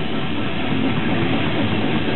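Metal band playing live: heavily distorted electric guitars and drums in a dense, unbroken wall of sound.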